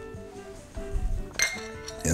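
Soft background music with held notes, and a sharp clink of tableware, a cup or plate set against china, about one and a half seconds in, after a few softer knocks.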